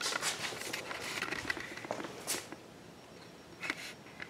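Faint movement noise from a hand-held camera being carried about: soft rustles and a few light, scattered knocks.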